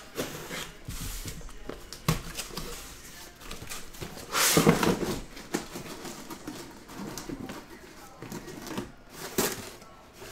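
Cardboard shipping case being opened and handled: several short knocks and cardboard scraping as its flaps are worked and the boxes inside are moved. The loudest scrape comes about four and a half seconds in.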